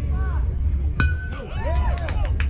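A youth baseball bat hitting the ball for a single: one sharp metallic ping about a second in, with a short ringing tone after it. Voices call out around and after the hit.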